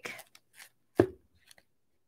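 A single sharp click or tap about a second in, with a few faint ticks around it.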